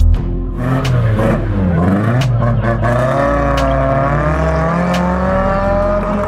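A car engine revving, its pitch swinging up and down, then climbing steadily as the car accelerates away, over background music with sparse drum hits.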